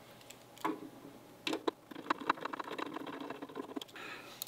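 Small clicks and taps as a plastic router housing and small hand tools are handled on a wooden table. The clicks are scattered at first and come thicker and faster in the second half.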